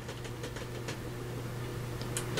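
Coffee dripping off a soaked sheet of paper back into a foil pan of coffee: a few faint, scattered drips over a steady low hum.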